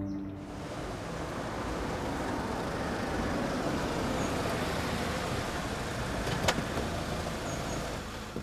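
Steady road traffic noise from passing motor vehicles, with one sharp click about six and a half seconds in.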